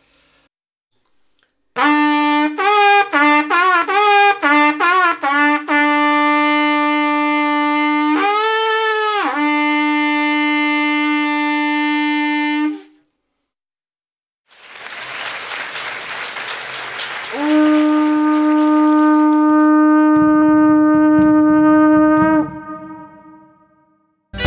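Long wooden Belarusian folk trumpet, carved from two spruce halves glued together, blown by a player. After a short pause it gives a quick run of short notes jumping between its overtones, then a long low held note with a brief higher note that bends up and back in the middle. After a second pause a breathy hiss rises, and a single low note sounds again, is held for several seconds, and dies away.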